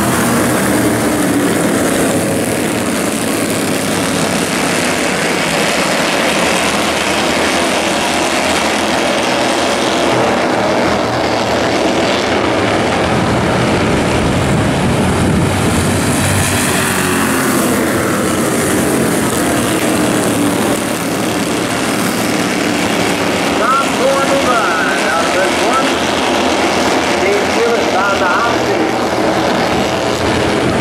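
A pack of Bandolero race cars running at racing speed, their small engines' notes rising and falling as the cars pass.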